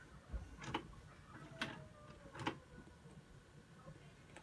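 VCR tape mechanism clicking as it loads and engages the tape to play: four faint, irregularly spaced clicks, with a faint motor whine that falls slightly in pitch in the middle.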